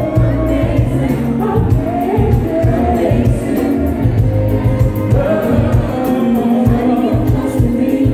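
A live soul band playing: electric guitar, bass and drums under several voices singing long held notes together.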